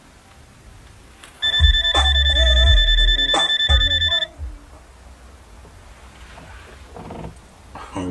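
Mobile phone ringing: a steady trilling electronic ring with deep bass and a voice under it. It starts about a second and a half in and cuts off suddenly about three seconds later, as the call is answered.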